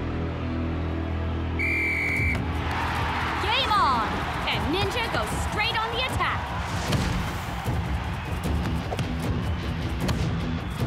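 Background music, with one short, steady referee's whistle blast about two seconds in. Then a stadium crowd cheers and shouts for a few seconds.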